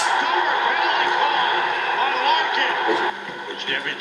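Televised hockey game: arena crowd noise with a commentator's voice faint beneath it. It drops away suddenly about three seconds in, leaving the commentator's voice alone.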